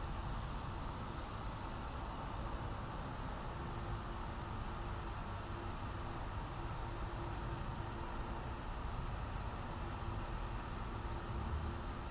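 A steady mechanical hum and hiss with a faint constant tone, unchanging throughout.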